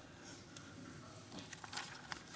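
Quiet room tone with a few faint, sharp clicks and light rustling in the second half.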